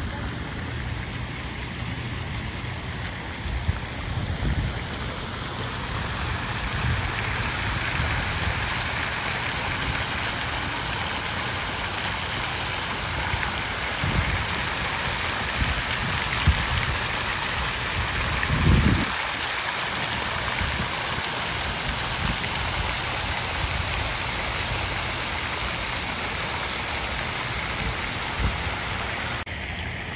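Park fountain water splashing steadily into its stone basin, a continuous hiss that grows a little louder from about six seconds in, with a low rumble underneath.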